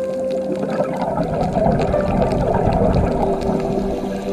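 Water running or bubbling, a dense low splashing noise that comes in about a second in and stops suddenly at the end, with soft sustained music tones underneath.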